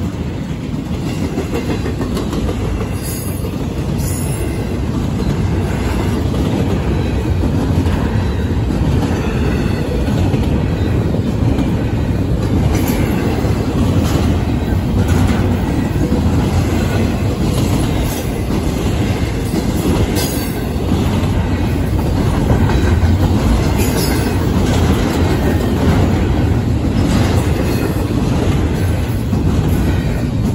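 Double-stack intermodal freight train passing close by: a loud, steady rumble of steel wheels on rail, with scattered sharp clicks as the wheels cross rail joints.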